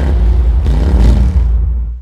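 A loud, deep, steady bass rumble, the closing sound of the promo, fading out at the very end.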